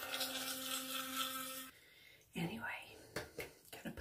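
Electric toothbrush running while brushing teeth, a steady buzzing hum that switches off after about a second and a half.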